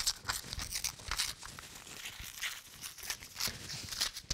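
A sheet of paper being torn by hand in a series of short, irregular rips, with some crinkling of the paper.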